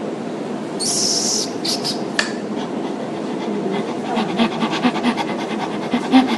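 Quick rhythmic panting breaths, several a second, starting about four seconds in, after a short hiss and a few light clicks near the start.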